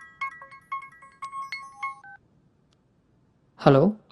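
Mobile phone ringtone: a short, chiming melody of quick, clean notes that stops about two seconds in, the call then being answered.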